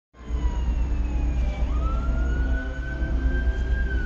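An emergency vehicle's siren wailing in slow glides: falling at first, jumping up in pitch about two seconds in, then climbing slowly and starting to fall near the end. A steady low rumble runs underneath.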